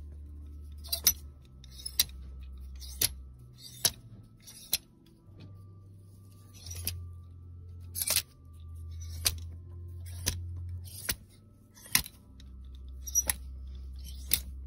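Metal clothes hangers clicking and scraping along a rack rail as hands push garments aside one by one, in sharp, irregular clicks every second or so. A low steady hum runs underneath.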